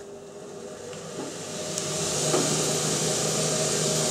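Bench grinder running as a piece of metal is cleaned up on it: a steady motor hum with a hiss of grinding on top. It grows louder over the first two seconds, then holds steady.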